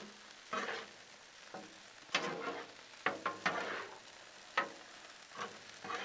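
Metal spatulas scraping and turning ground beef with diced onions and bell peppers across a hot Blackstone steel griddle top, over a faint sizzle. The scrapes come irregularly, in short strokes, several in a row.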